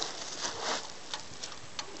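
Soft rustling and two sharp clicks, one about a second in and one near the end, as hands work the dog's draft harness and cart shaft fittings.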